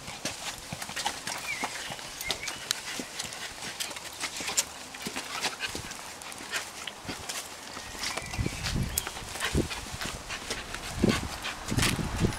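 Footsteps on a paved path, a steady run of light clicks and scuffs as people walk with a puppy on a lead, with a few low thumps in the second half.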